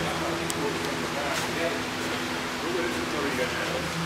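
A steady mechanical hum made of a few low, unchanging tones, with faint voices in the background.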